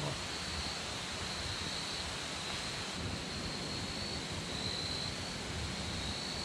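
Steady rush of flowing creek water with a continuous high-pitched insect chorus over it that swells and fades a little.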